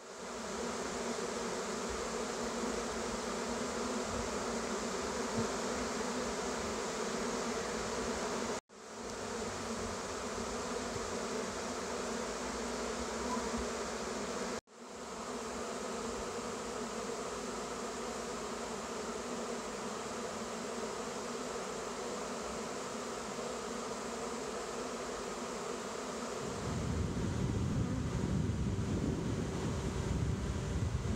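A honeybee swarm buzzing steadily and densely, many bees fanning their wings as they scent to draw the rest of the swarm into a box. The buzz cuts out for an instant twice, and a low rumble joins it near the end.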